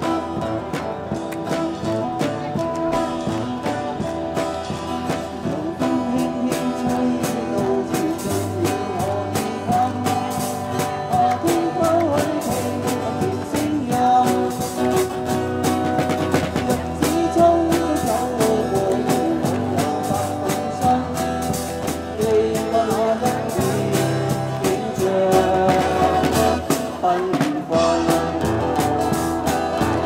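Live street band playing an upbeat Cantopop song on electric guitars and a drum kit with a singer; a bass line comes in about eight seconds in.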